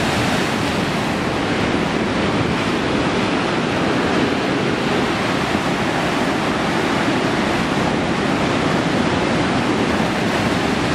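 Ocean surf washing and foaming over a rocky shore, a steady rush of breaking water.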